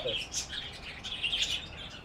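Small birds chirping, a scatter of short high chirps.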